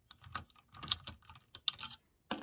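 Quick, irregular clicking and clattering of small plastic parts: a Cobi crew minifigure and its accessories being turned over and fiddled with in the fingers over the brick-built tank.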